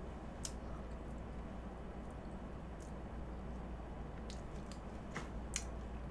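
Faint clicks of a fork against a cake plate, about half a second in and a few more near the end, with soft eating sounds over a steady low room hum.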